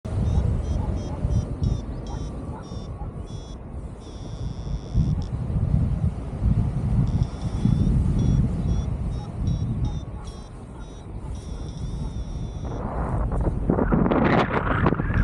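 Paragliding variometer beeping in quick trains of high beeps, twice held as a steady tone for about a second, signalling the glider's vertical speed. Under it, wind buffets the microphone, growing into a louder rush of wind noise near the end.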